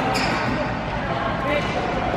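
Badminton rally: a sharp crack of a racket striking a shuttlecock just after the start, over a background of voices in a large hall.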